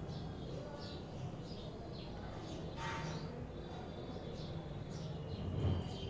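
Faint steady room hum with scattered small bird chirps in the background and a light rustle of wires being handled about three seconds in.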